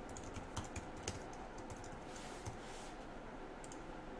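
Computer keyboard being typed on: faint, irregular keystrokes, most of them in the first second, with a few more clicks near the end.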